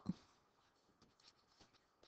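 Near silence with a few faint, short scratches of a stylus writing letters on a digital screen.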